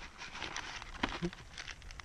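Crinkling and rustling of a plastic food packet being handled, a quick irregular run of small crackles.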